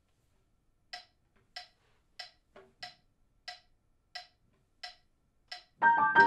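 Metronome clicking steadily at about one and a half clicks a second, eight clicks counting in the tempo. A grand piano comes in with loud chords just before the end.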